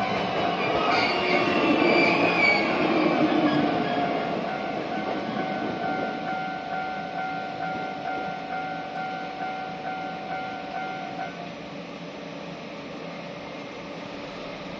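Shizuoka Railway A3000-series electric train running over the level crossing and away. Its wheel rumble is loudest about two seconds in, then fades, while the crossing's alarm bell rings steadily in a repeating tone until it stops about eleven seconds in, as the barriers rise.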